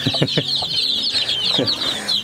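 A large brood of young chicks peeping continuously, many high-pitched chirps overlapping. A few short, lower clucks from the mother hen come near the start and again towards the end.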